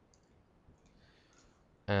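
A few faint computer mouse clicks against quiet room tone.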